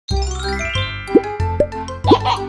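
Cheerful children's intro jingle. Its tones fan upward over the first second, and two quick rising blips come about a second in and half a second later.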